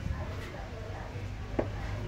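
Two sharp knocks, one at the start and one about a second and a half in, from a framed mosquito screen being handled and pressed into place over a ventilator opening.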